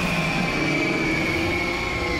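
A cartoon monster's long, loud roar: one held screeching cry that sags slightly in pitch toward the end, over a noisy rumble.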